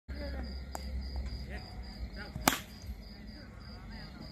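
A single sharp crack about two and a half seconds in: a wooden cricket bat striking a plastic ball, over faint background voices.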